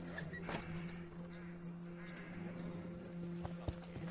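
Film soundtrack: low held tones sustained throughout, with a few scattered sharp knocks and thuds over them.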